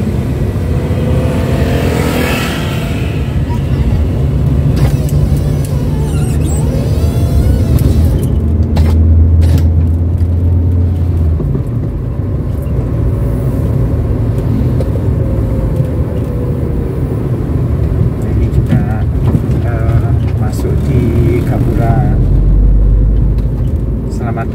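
Inside the cabin of a 2007 Daihatsu Terios TX on the move: the engine running under way with steady road and tyre noise. A low drone swells for a couple of seconds near the middle and again near the end.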